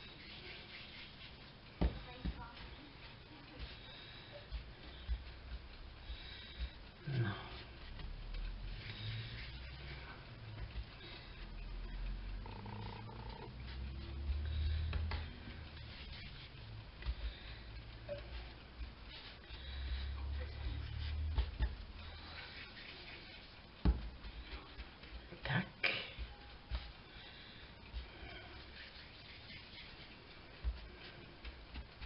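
Hands rolling soft quark dough pieces into balls on a floured worktop, with low rubbing and handling noise. A few sharp knocks on the counter come through, the clearest near the start and two close together near the end.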